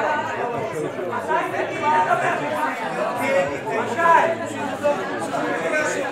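Several people talking over one another at once in a large hall: indistinct overlapping voices of a heated commotion.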